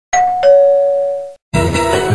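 A two-note 'ding-dong' doorbell chime: a higher note, then a lower note that rings on and fades away. Rhythmic music starts right after, about one and a half seconds in.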